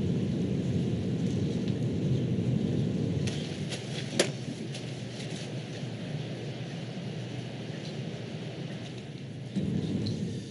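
Low rumbling handling noise on a microphone, with a few sharp clicks about three and four seconds in.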